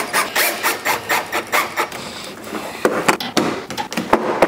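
Cordless drill driving a wood screw through painter's tape into a wooden board, running in short repeated bursts as the screw grinds into the wood. It is followed by a few sharp clicks near the end.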